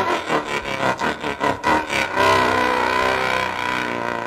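Live free-jazz improvisation with saxophones and guitar. For the first two seconds the band plays rapid short staccato stabs, about six a second, then settles into long held notes.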